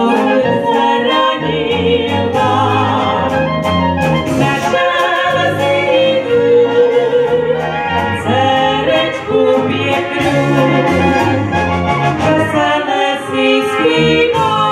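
Moravian brass band (dechová hudba) playing a folk song, with two women singing over the brass and a tuba carrying the bass line.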